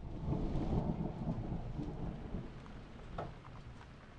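A low rolling rumble of thunder that swells in the first second and fades away over the next few seconds.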